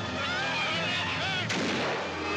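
A single sharp bang about one and a half seconds in, with a ringing tail, following high gliding wails.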